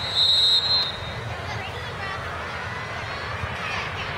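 Referee's whistle blown once, a single steady shrill blast of under a second at the start, signalling play, over crowd chatter.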